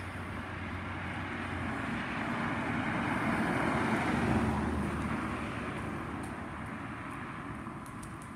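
A car driving past: tyre and engine noise that swells as it approaches, is loudest about four seconds in, then fades away.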